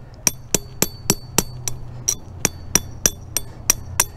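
Small 7-ounce hammer tapping lightly and steadily on the steel wire H-stand of a yard sign, about three to four ringing metallic taps a second, driving the stand's legs into hard rocky ground.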